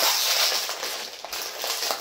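Plastic sweet bag crinkling as it is pulled open by hand, loudest at the start.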